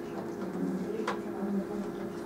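Chalk tapping and scratching on a blackboard as a short note is written, with one sharp tap about a second in, over a steady low hum.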